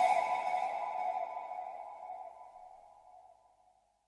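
The last held synth chord of an electronic dance track ringing out and fading away, dying to silence about three seconds in.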